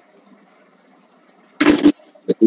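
Faint steady hiss of a video-call audio line, then near the end a short, loud burst of noise with some voice in it.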